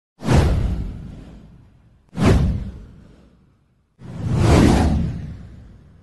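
Three whoosh sound effects for an intro title, each with a deep rumble, about two seconds apart. The first two hit suddenly and fade away; the third swells up before fading.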